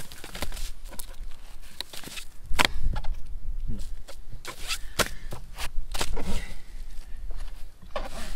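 Wind rumbling on the microphone, strongest about two and a half to three seconds in, over scattered light taps and clicks from handling a plastic-wrapped bamboo rolling mat and a rice-covered nori sheet on a plastic cutting board.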